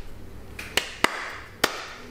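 A few short, sharp clicks, three of them, the first about three-quarters of a second in and the last near the end, over faint steady room hiss.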